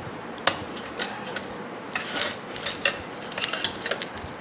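Screwdriver tip scraping and clicking against a microwave magnetron's ring magnet and its sheet-steel frame while it is pried loose: a run of irregular short metallic clicks and scrapes.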